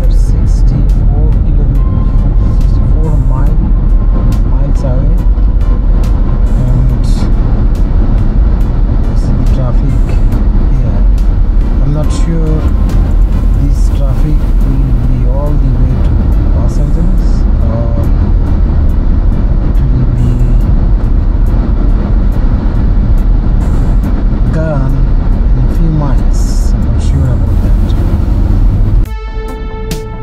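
Loud, steady road and wind rumble from a car driving at highway speed, with scattered clicks and indistinct talk underneath.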